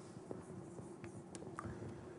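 Faint scratching and light ticks of writing on a lecture board, over a low steady room hum.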